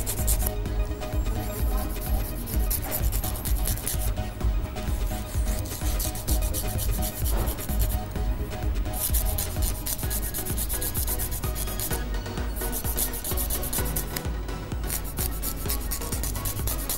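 Soft nail file rasping quickly back and forth across a child's fingernails, shaping square-cut nails. The rapid strokes come in bursts, with a few short pauses between them.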